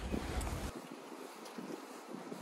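Wind buffeting the microphone, a heavy low rumble with rustling. It cuts off abruptly about two-thirds of a second in, giving way to fainter outdoor wind noise with light gusts.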